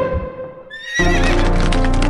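A horse whinnies, one short wavering call that falls in pitch, about two-thirds of a second in; then music comes in loudly about a second in.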